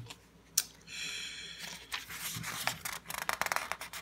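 Paper pages of a dot grid notebook insert being leafed through by hand: a run of soft rustles and quick light flicks of paper, starting after a short quiet moment with a single click.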